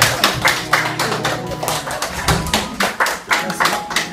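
A small group applauding by hand, with uneven, overlapping claps several times a second.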